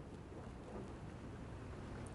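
Steady faint background noise: an even hiss with a low rumble underneath, with no distinct events.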